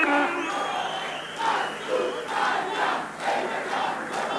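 A large crowd cheering and shouting together, the voices surging in a rhythm of about two a second from about a second and a half in. A sung note dies away at the very start.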